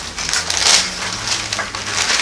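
Bible pages being handled and turned, a run of irregular crisp paper rustles, loudest a little under a second in.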